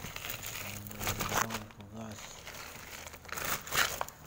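Wet rough kalimaya opal stones rattling and clicking against one another as a plastic scoop stirs them in a basin, with a flurry of sharper clicks near the end.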